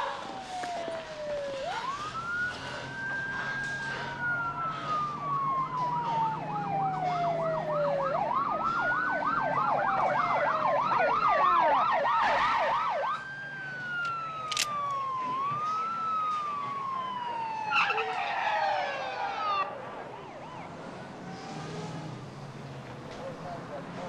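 Police car sirens, several overlapping: long wails that rise and fall slowly, with a fast yelp in the middle stretch. A short burst of noise comes near the end.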